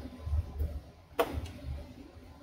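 A single sharp click about a second in as a plug-in wiring terminal strip is pushed home into the side of a PLC, over a low rumble of handling noise.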